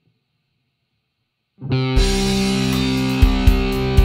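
Near silence, then about a second and a half in a song starts abruptly, led by a distorted electric guitar holding a chord, with a few heavy beats near the end.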